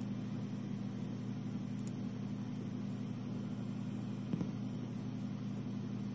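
Blank stretch of an old cassette tape playing: steady tape hiss over a low hum, with one faint brief bump about four and a half seconds in.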